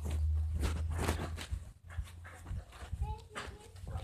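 Wind rumble and handling noise on a phone microphone as it is carried, with scattered knocks and rubs. About three seconds in comes a short high-pitched whine.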